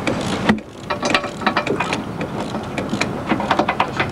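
An irregular run of sharp mechanical clicks and knocks. The sound drops briefly about half a second in, and the clicks come thicker near the end.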